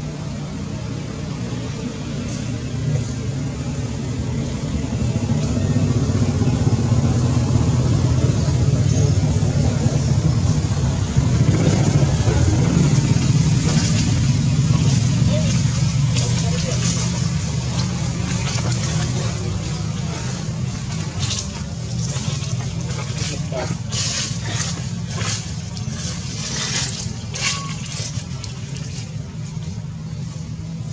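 A low, steady motor rumble, like a vehicle running nearby, growing louder toward the middle and easing off again. In the last third it is joined by a run of sharp crackles, such as dry leaves being trodden.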